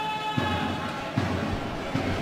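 Roller hockey arena ambience: crowd noise, with a held tone that fades in the first half-second and a few sharp knocks during play.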